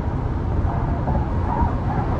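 Steady low road and tyre rumble inside a Tesla's cabin at freeway speed, with no engine note.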